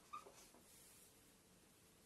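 Near silence: room tone, with a faint, brief squeak of a marker on a whiteboard just after the start.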